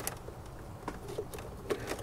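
Faint handling noises from gloved hands working an oxygen sensor's plastic wiring connector: a few small ticks and rustles about a second in and near the end, over a low steady background hum.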